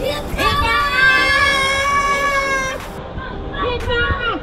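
A woman's long high-pitched scream, held for about two and a half seconds as the raft tube is pushed off down the water slide, followed by a shorter falling cry near the end.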